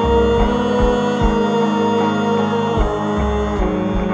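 A band playing an instrumental passage: a held chord over low drum hits played with mallets, with acoustic guitar, changing chord a little before three seconds in.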